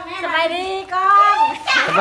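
Speech only: fairly high-pitched voices exchanging greetings.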